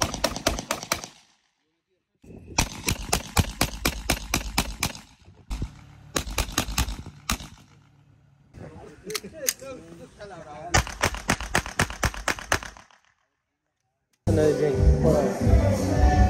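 Rapid volleys of sharp bangs in several runs, each a few seconds long and cut off abruptly, with faint voices between. Loud music cuts in near the end.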